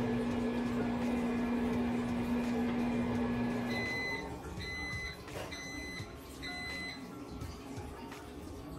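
Microwave oven running with a steady hum that cuts off about four seconds in, followed by four evenly spaced high beeps, the signal that its cycle has ended.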